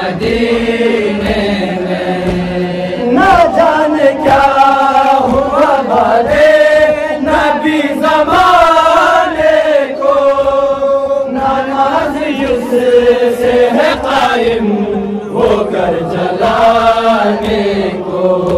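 A group of young men's voices chanting a noha in unison: an Urdu lament for Bibi Fatima (Zahra). The chant is sung in long, wavering phrases.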